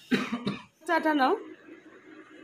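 A person coughs once, then makes a brief voiced sound that rises in pitch, about a second in.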